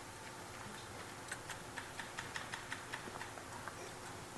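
Faint keystrokes on a computer keyboard: light, irregular clicks that come quicker from about a second in, as a line of code is typed.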